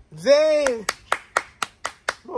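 A short exclamation, then a man clapping his hands in a quick, even run of about six claps, roughly four a second.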